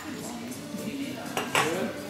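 Café tableware clinking: ceramic cups and dishes tapping at the table, with a few short clicks about one and a half seconds in.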